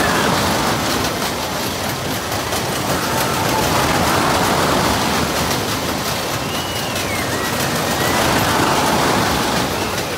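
Ring of Fire fairground ride's train of cars running on its vertical loop track: a loud, steady rushing rumble that swells about every four seconds.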